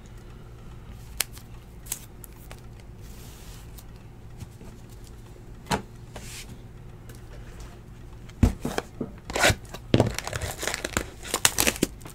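Plastic shrink wrap on a sealed hobby box of trading cards crinkling and tearing as the box is unwrapped, starting about two-thirds of the way in and growing busier toward the end. Before that there are only a few light clicks of cards being handled on the table.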